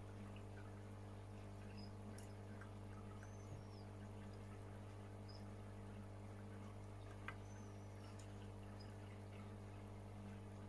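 Quiet room tone with a steady low hum and two faint taps, one about three and a half seconds in and a sharper one a little past seven seconds.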